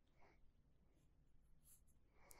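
Near silence with a few faint, short scratches of a graphite pencil sketching on paper.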